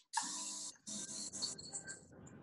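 Handheld airbrush hissing as it sprays ampoule serum close against the scalp, in two bursts: a short one near the start and a longer one from about a second in.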